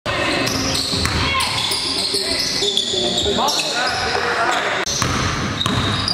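Sounds of an indoor basketball game echoing in a gym: a basketball bouncing on the hardwood floor, short sneaker squeaks, and players' voices.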